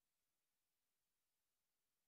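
Near silence: only a very faint, even hiss.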